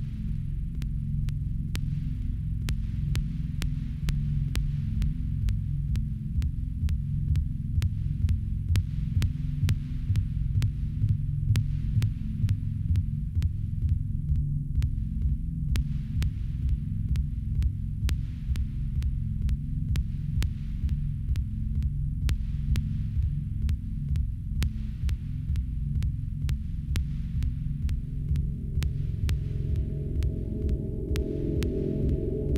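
Minimal electronic music: a deep, pulsing low drone with faint high clicks a couple of times a second, and a higher steady tone joining near the end.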